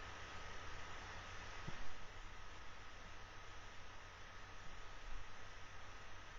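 Steady background hiss and low hum of the recording, with a faint steady high tone throughout; a single faint click a little under two seconds in.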